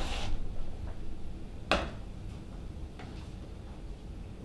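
A few light taps and one sharp click about halfway through, over a low steady hum of the hall: an actor's footsteps on the stage floor.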